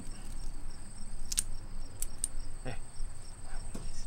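Crickets chirping steadily with a regular pulsing trill, joined by a few sharp clicks and small low knocks about halfway through.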